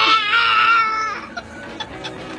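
A baby crying: one long, high-pitched wavering cry that breaks off about a second in.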